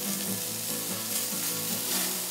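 Beer-marinated chicken sizzling on a hot grill grate: a steady hiss of cooking fat and marinade.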